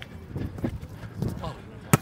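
A single sharp smack of a hand striking a volleyball near the end, with faint voices of players in the background.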